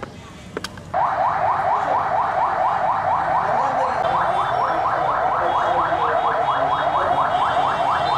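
Electronic siren sounding a rapid yelp: quick rising whoops repeating about five times a second. It starts suddenly about a second in and holds steady.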